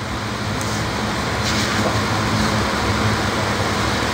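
Steady low motor-vehicle engine rumble under a loud even hiss, holding at a constant level.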